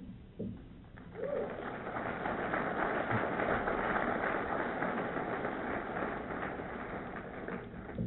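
Audience applauding, building up about a second in and then holding steady.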